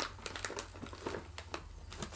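Snack pouch crinkling in the hands: a faint, irregular scatter of short crackles.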